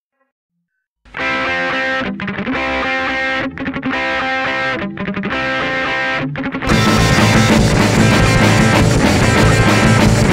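A hardcore-punk song starts about a second in with a distorted electric guitar riff played in short phrases with brief breaks. Near the two-thirds mark the full band crashes in with drums and gets louder.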